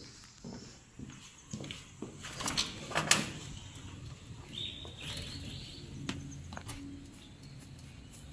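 A front door being unlatched and opened: a few sharp clicks and knocks about two to three seconds in. A short high-pitched note follows about five seconds in.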